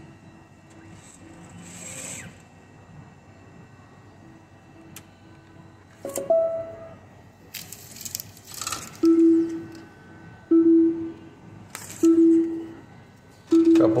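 ATM cash dispenser at work: a few clicks, then a short whirring rush as the notes are fed out, followed by four loud, long beeps about a second and a half apart. The beeps are the machine's prompt to take the cash from the slot.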